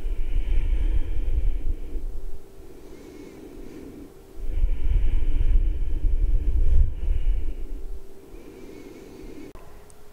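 Slow, deep breaths blowing across a clip-on microphone, heard as two long low rumbles, the second starting about four seconds in, over a faint steady hum.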